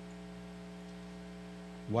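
Steady electrical mains hum, a low tone with a row of even overtones, until a man's voice starts at the very end.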